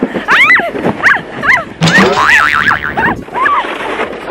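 A woman's repeated high-pitched squeals and shrieks, each rising and falling in pitch, mixed with laughter.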